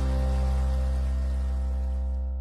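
Theme music of a TV magazine's opening titles, ending on a held chord over a deep bass note.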